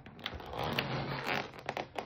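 Foil balloon crinkling and rustling as it is handled and turned, with a few small crackles.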